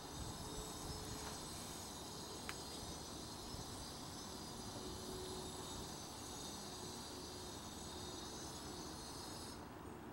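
A steady high-pitched insect buzz that stops abruptly near the end, with a single sharp click about two and a half seconds in.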